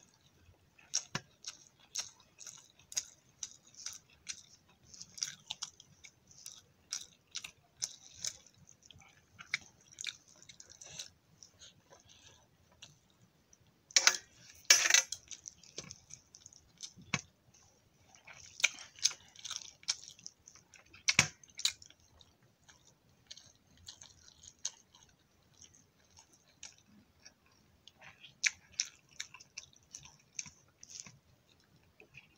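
Close-miked chewing and wet mouth sounds of rice and aloo posto being eaten by hand, with many short clicks and smacks. There is a much louder crackling burst about halfway through.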